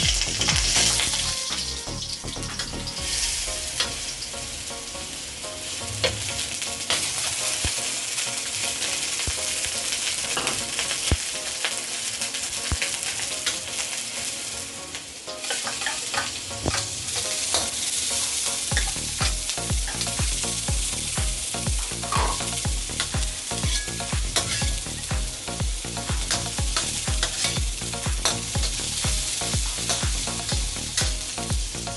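Minced garlic sizzling in hot oil in a steel wok, with a metal spoon clicking and scraping against the pan as it is stirred. The sizzle grows louder about halfway through as chopped red onion goes in.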